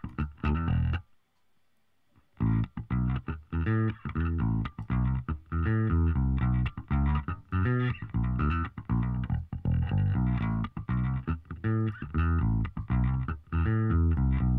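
Recorded electric bass guitar part playing back through a vintage-style Siemens EQ plugin, with the top end being warmed. Playback drops out for about a second and a half near the start, then the plucked bass line resumes.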